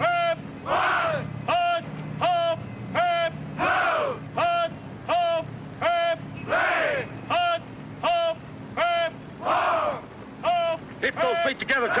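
A group of men counting push-up cadence in unison: short shouted counts about every three-quarters of a second, with a longer call about every three seconds. The calls crowd closer together near the end.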